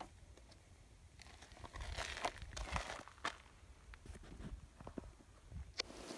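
Faint rustling, scraping and short clicks from hands handling a rifle-shot block of clay on a plastic crate, a little louder about two to three seconds in and again near the end.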